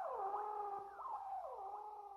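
Closing outro of an alternative rock song: a soft synthesizer figure of sustained tones that slide downward and repeat, fading out after the drums have stopped.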